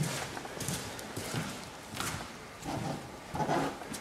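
Footsteps walking at an even pace, about one step every two-thirds of a second.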